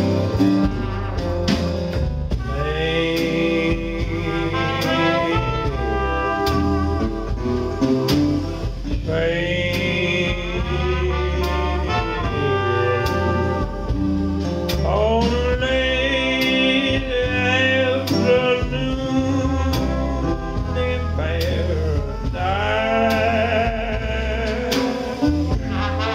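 Live old-time jazz-blues band playing a slow number: guitar, trumpet and trombone, upright bass and bass drum, with a lead line of long held, wavering notes in four phrases.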